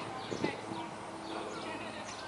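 Street ambience: many short high chirps of birds in the trees, with distant voices and a faint steady hum that starts under a second in.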